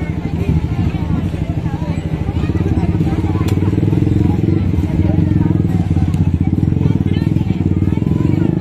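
An engine running steadily close by, getting louder a few seconds in, under people's voices and chatter.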